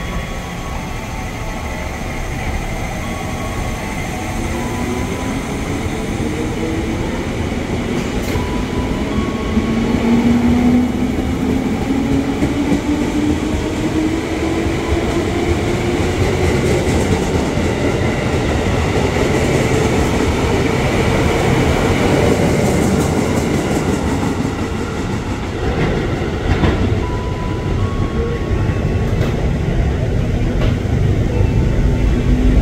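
JR 205 series electric commuter train pulling out, its traction motors whining in several tones that rise steadily in pitch as it picks up speed, over the rumble of wheels on rail. Near the end the whine fades and a plainer train rumble follows.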